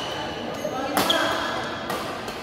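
Badminton racket striking a shuttlecock: one sharp crack about a second in, with a brief high ring after it, over a background of voices in the hall.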